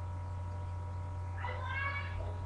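Steady electrical hum, with a brief high-pitched sound rising in pitch near the end.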